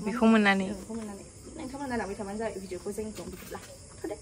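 A woman talking, over a faint steady high-pitched hiss.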